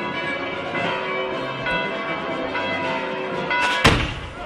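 Church bells ringing, several tones struck over and over and overlapping, with a single loud, sharp bang shortly before the end.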